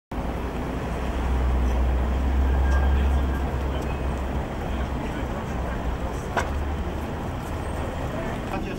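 Street traffic noise: a low rumble, strongest in the first few seconds and easing off, with a single sharp click about six seconds in.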